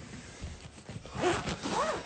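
Rustling, handling-type noise about a second in, followed by two short rising voice-like sounds near the end.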